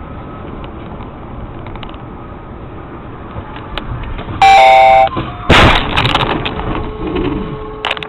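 Steady road noise inside a moving car, then a car horn blares for under a second, followed about half a second later by a loud crash of impact that trails off in noise. A lower steady tone holds through the last couple of seconds.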